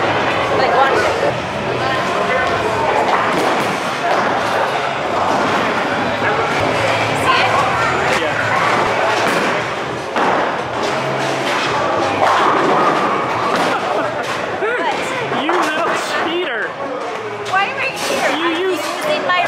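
A bowling ball thudding and rolling down a lane and knocking into pins, under background music and people's voices.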